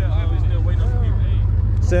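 A car engine idling with a steady low rumble, under faint talking voices.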